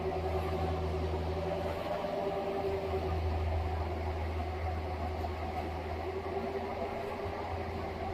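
Compact hydraulic excavator's engine running steadily while it digs, a continuous low hum with a steady higher tone over it.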